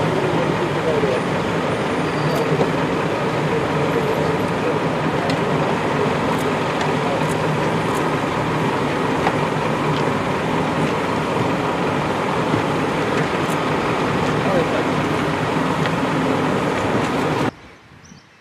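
Engine of a police transport vehicle idling with a steady low hum, under indistinct voices and scattered small clicks; the sound cuts off suddenly near the end.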